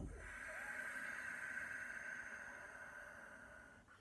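One long ujjayi exhale: a soft, silky, whistling, raspy breath from the back of the throat, made with the throat narrowed and the mouth shut. It holds steady, then fades away just before the end.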